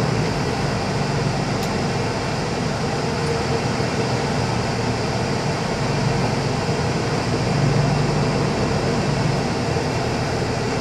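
Steady engine hum and road noise inside a truck cab, rolling slowly in heavy freeway traffic.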